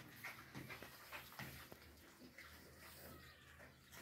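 Faint sounds of a litter of puppies eating: soft chewing and scattered small clicks.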